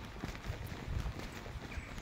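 Footsteps on brick paving: a run of light, irregular taps as someone walks.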